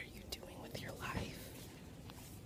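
Quiet, indistinct murmured speech, with a few short clicks and rubs from a handheld phone's microphone.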